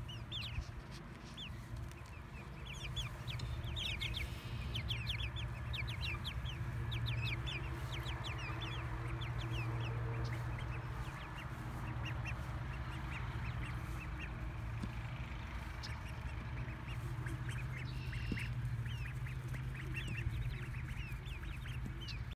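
Young poultry, half-grown chicks and White Runner ducklings, peeping: many short high chirps scattered throughout, over a steady low hum.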